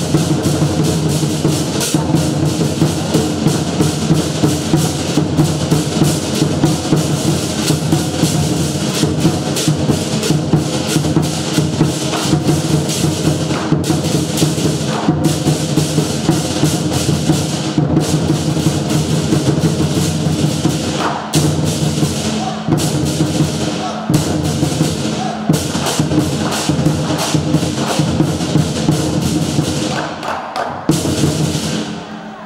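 Lion dance drum beaten with sticks together with clashing hand cymbals, playing a fast, continuous, driving rhythm.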